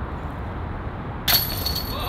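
A sudden sharp clink about a second and a half in, with a high ringing that carries on.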